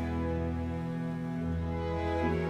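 Slow Baroque opera instrumental music: sustained string chords over a held bass line, with the harmony shifting about a second in.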